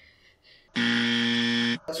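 A dubbed-in buzzer tone with a low pitch, held steady for about a second and cut off abruptly: a censor buzzer blanking out a spoken word.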